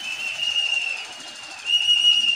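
A long, steady, high-pitched whistle from a pigeon flyer working a flock of pigeons circling overhead. It gets louder near the end.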